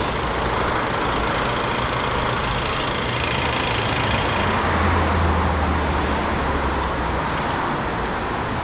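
Street traffic: the steady noise of passing road vehicles, with a truck's low engine note strongest from about five to seven seconds in.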